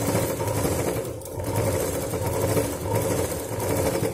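Sewing machine running steadily as it stitches down a gathered fabric flower, with a brief slackening a little over a second in; it stops right at the end.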